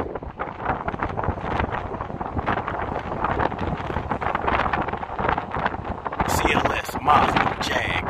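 Wind buffeting the microphone in a rough, gusting rumble, with indistinct voices mixed in that grow louder near the end.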